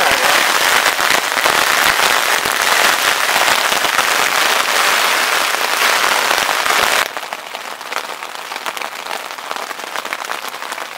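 Heavy rain drumming on a nylon tent fly, heard from inside the tent as a loud, dense crackling patter. About seven seconds in it drops suddenly to a quieter, sparser patter.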